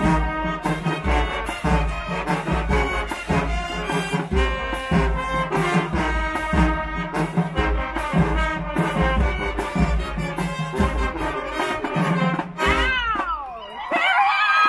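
High school marching band playing live, with the brass section carrying the tune over a steady drum beat. Near the end the playing breaks off and high gliding sounds rise and fall.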